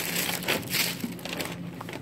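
Crinkling and rustling of plastic water bottles and their shrink-wrap as they are handled and taken off a shelf, loudest in the first second and a half.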